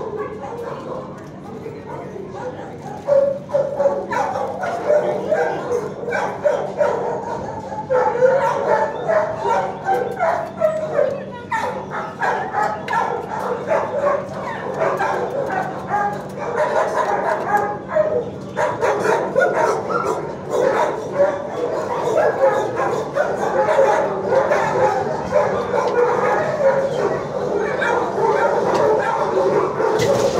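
Many dogs barking and yelping in a shelter kennel room, a continuous overlapping din that grows louder about three seconds in.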